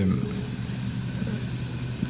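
Room tone in a pause between words: a steady low hum under a faint even hiss.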